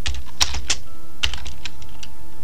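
Typing on a computer keyboard: a run of quick, unevenly spaced keystrokes.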